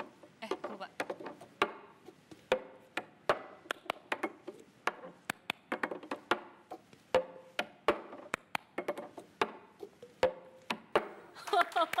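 A plastic cup drummed on a wooden tabletop: a repeating rhythm of sharp taps and knocks as the cup is lifted, struck and set down, about two to three hits a second.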